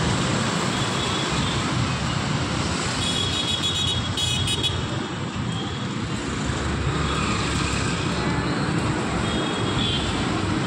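Steady road traffic: auto-rickshaws, scooters and cars running past, with short high horn toots about three and four seconds in.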